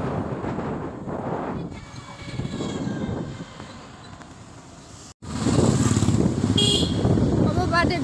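Road noise from riding on a motorbike through town traffic: engine and wind rumble on the phone's microphone, broken by a brief dropout about five seconds in, after which the rumble is louder. A short high horn toot sounds shortly after the dropout.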